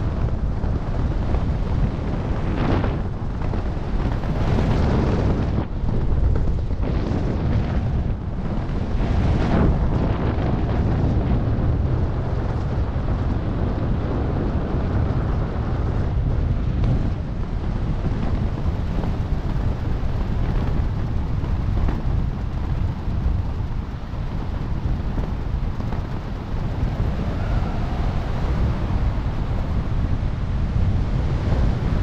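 Wind buffeting a helmet-mounted camera microphone during descent under an open parachute: a steady, loud rumble with several gusty surges in the first ten seconds.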